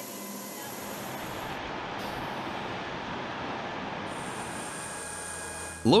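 A steady rushing mechanical noise, even throughout, with no distinct knocks or tones. Its highest hiss drops away for about two seconds near the middle.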